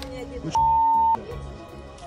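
A single censor bleep: one steady pure beep about half a second long, starting about half a second in.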